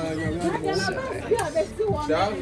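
Indistinct chatter: several voices talking, none of the words clear, with one sharp click about two-thirds of the way through.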